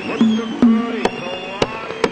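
Song music led by tabla: sharp strikes about twice a second, with bass-drum strokes that slide down in pitch and then settle, under steady high melody tones.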